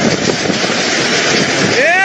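Hurricane Dorian's wind and rain, heard as a loud, steady rush of noise buffeting the microphone.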